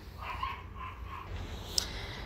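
A dog makes faint short high sounds in the background, with a sharp click near the end.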